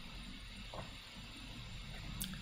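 Faint room tone with a low steady hum, and a brief faint blip about three-quarters of a second in.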